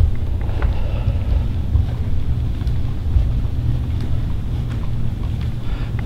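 Low, uneven rumble of handling noise on a handheld camera's microphone as it is carried up a carpeted staircase, with a few faint clicks.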